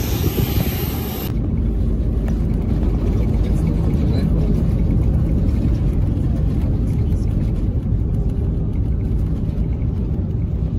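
Steady low rumble of a jet airliner heard from inside the cabin as it rolls along the runway, starting at a cut about a second in; before that, a moment of outdoor noise on the airport apron.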